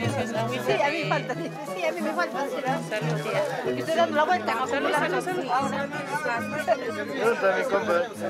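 Several people talking at once in overlapping chatter, with music playing underneath.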